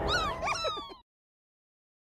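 Several cartoon creature squeaks and chirps, overlapping short calls that glide up and down in pitch, lasting about a second and then cutting off to dead silence.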